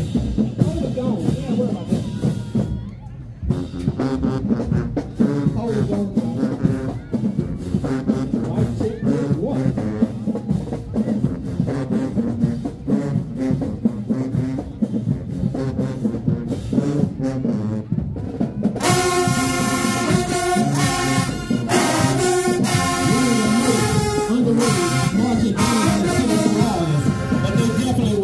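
High-school marching band playing as it marches in: the drumline beats out a cadence, and about two thirds of the way through the brass section comes in loudly over the drums.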